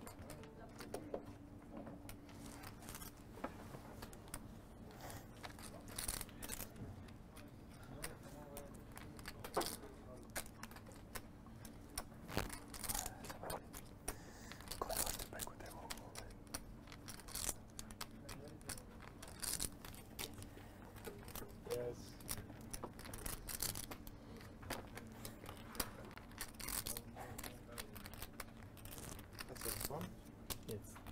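Poker chips clicking as a player handles them at the table, in scattered short clicks over a faint steady hum.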